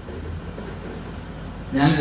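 A steady high-pitched whine over room hiss in a pause of a man's talk, with his voice coming back in near the end.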